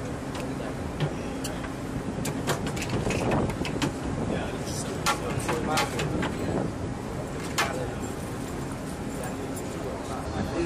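Scattered metallic clicks and clanks of linked 25 mm rounds being loaded into the feed tray of a Mk 38 M242 Bushmaster gun mount, over a steady low machinery hum.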